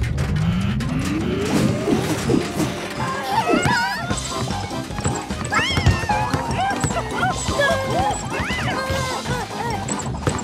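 Cartoon soundtrack: background music with a rising glide over the first two seconds, then squeaky, wordless character vocalizations and slapstick crashes and thumps.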